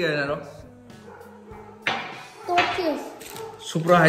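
A small boy's voice imitating a car engine with his mouth: a low steady hum, then a sudden louder burst of voicing about halfway through, with talk near the end.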